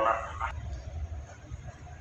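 A person coughs once, loud and short, right at the start, over the steady low hum of the tent's large air-conditioning blowers.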